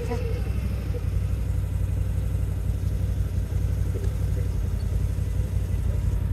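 Side-by-side utility vehicle's engine running steadily, a low continuous rumble heard from inside its open cab.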